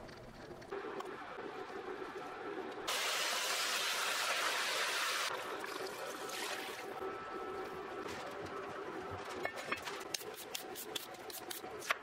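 Liquid being poured into a pot of oxtail pieces. The pour is loud and steady for a couple of seconds, then quieter. Near the end comes the irregular clicking of a knife against a plastic cutting board as a daikon radish is sliced.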